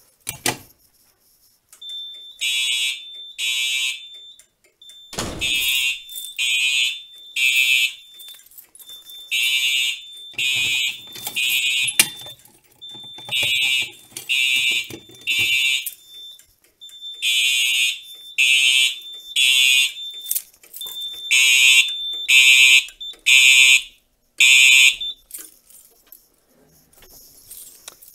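Fire alarm horns sounding in a temporal-three evacuation pattern: loud blasts mostly in groups of three about a second apart, with a longer pause between groups, after a Pyro-Chem manual pull station is pulled. A thin steady high tone runs under the blasts, and the alarm stops about 25 seconds in.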